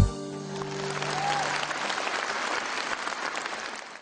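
Concert audience applauding as the band's last held chord dies away; the clapping swells briefly, then fades and cuts off suddenly at the end.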